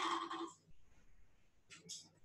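Quiet kitchen handling: a short fading sound at the start, then two brief scrapes of a spatula against a glass mixing bowl near the end.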